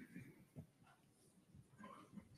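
Near silence, with a few faint, short sounds in the first half second and again near the end.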